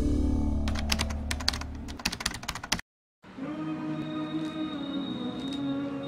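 Channel logo sound effect: a fading low drone under a rapid run of sharp clicks like typing, which cuts off suddenly near the middle. After a brief moment of silence, slow background music with held sustained tones begins.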